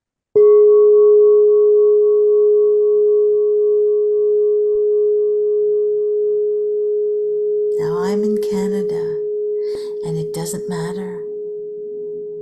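Quartz crystal singing bowl struck once with a soft mallet, ringing with one steady pure tone and faint higher overtones that fade only slowly. A few softer broken sounds join over the ringing in the last few seconds.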